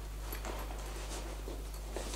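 A few faint handling sounds, small boxes of contact lenses being picked up, over a steady low hum.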